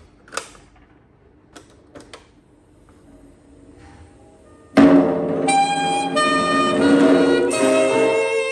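Sharp GF-7500 cassette boombox: a few mechanical clicks from its cassette door and controls, then about five seconds in, music starts playing from the tape through its speakers, loud with long held melody notes.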